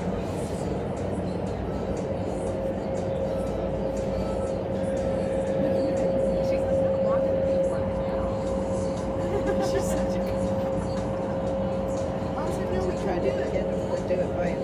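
Indoor skydiving wind tunnel running: a steady rush of air from its fans with a steady hum, heard from outside the glass flight chamber.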